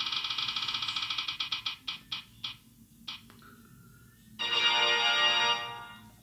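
Spinning-wheel app playing through a phone speaker: a rapid run of ticks that slows and stops about two and a half seconds in. About four and a half seconds in, a short chime plays as the wheel settles on its result.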